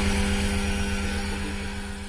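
Steady low electrical hum of an energized substation power transformer, with a steady hiss, slowly fading.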